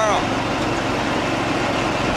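Steady wind rushing on the microphone, with a low engine hum underneath.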